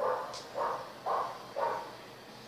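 An animal calling four times in quick succession, about two short calls a second.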